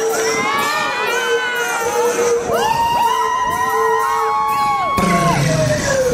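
A crowd of young spectators cheering and screaming, many high-pitched shrieks and whoops rising and falling over one another. About five seconds in, a new song's music starts up.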